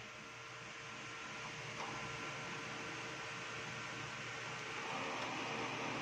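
Brother DCP-L2540DW laser printer running with a steady whir from its fan and motors, a faint hum coming in about two seconds in, as it is test-run after its pick-up roller was cleaned.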